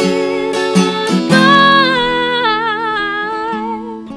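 A woman singing to a strummed acoustic guitar. From about a second in she holds a long note with vibrato that slides down in pitch.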